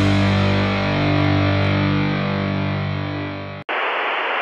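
Distorted electric guitar chord ringing out at the end of a rock intro sting, fading slightly, then cutting off suddenly near the end. A steady hiss of TV static takes its place.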